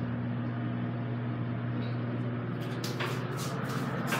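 Elevator car in motion, its drive giving a steady electric hum heard from inside the car, with a few short clicks near the end.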